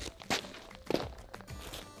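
A few footsteps, two or three short steps, over quiet background music.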